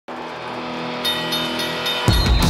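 Intro music swelling up: a sustained chord of steady tones that grows slowly louder. A bright, shimmering high layer joins about halfway through.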